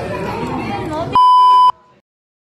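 Chatter of people's voices, then about a second in a loud steady test-tone beep from a TV colour-bar pattern sounds for about half a second and cuts off abruptly.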